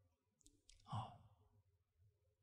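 Near silence, broken about a second in by one short, soft sigh from a man speaking close to a handheld microphone, with faint mouth clicks just before it.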